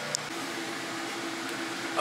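Washing machine running: a steady mechanical hum with a low, even tone that sets in shortly after the start.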